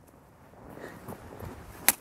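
A plastic frisbee caught in a gloved hand: after a stretch of faint outdoor background, a single sharp smack near the end as the disc lands in the hand.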